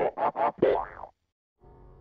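Distorted cartoon logo soundtrack: a run of warped, voice-like cartoon noises with sliding pitch that cuts off abruptly about a second in. After half a second of silence, a faint low drone begins.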